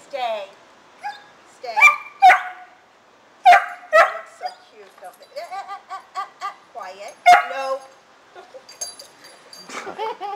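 Puppies barking: loud, short barks about two seconds in, twice around three and a half to four seconds, and once more near seven seconds, with softer, quicker calls in between.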